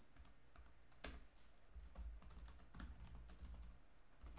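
Faint typing on a computer keyboard: scattered light keystrokes, with one louder key press about a second in.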